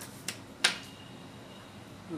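Two short, sharp clicks a third of a second apart, the second the louder, as an RCA plug is pushed into the amplifier board's input socket.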